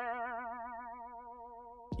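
Cartoon-style "boing" sound effect: a single twanging note with a fast wobble in pitch, slowly fading out.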